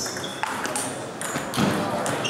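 Table tennis rally: a few sharp clicks of the celluloid ball off paddles and table, the loudest near the end, with voices of the people in the hall behind them.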